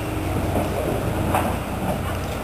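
Steady low rumble of an idling engine, with faint voices over it.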